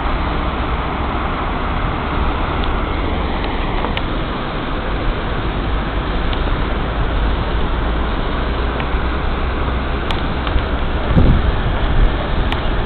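Steady rushing of water spilling over a low stone weir, with wind rumbling on the microphone. A brief low bump near the end.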